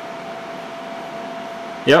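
Steady rushing of desktop computer cooling fans, with a thin steady whine running under it.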